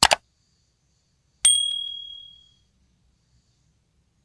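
Subscribe-button sound effect: a quick double mouse click, then about a second and a half later a single bright bell ding that rings out for about a second.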